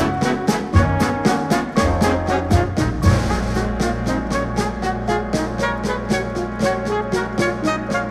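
Big band jazz: a brass section plays over a steady drum beat, and a low held note comes in about three seconds in.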